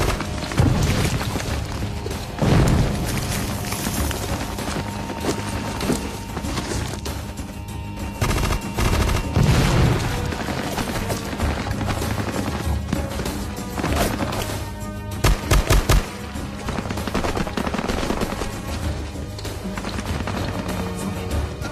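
Battle-scene gunfire: steady bursts of automatic weapons fire, with heavier surges now and then and a quick run of four loud shots late on.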